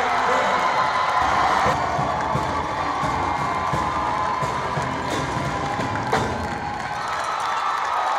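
Crowd cheering and women shouting and shrieking in celebration over music.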